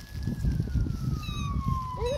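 A siren wailing, one thin tone that slides slowly down in pitch, over low rumbling noise on the microphone that is louder than the siren.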